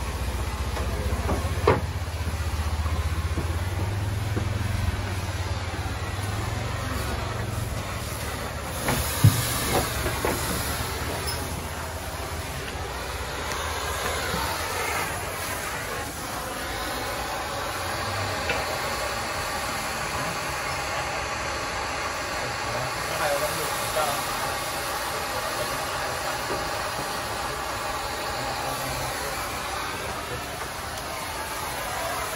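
Thermal fogger running steadily with a hissing rush as it blows out a dense fog of diesel, with a few sharp knocks.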